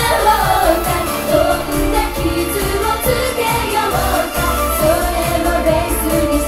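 Female pop vocal group singing live into microphones over a backing track with a steady beat.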